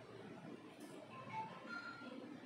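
Faint electronic jingle: a quick run of short, high beeping notes at changing pitches, starting about a second in.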